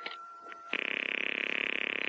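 A telephone ring heard over the line as a steady buzzing tone about a second and a half long that cuts off sharply. It comes after a few light clicks, as of a number being dialled.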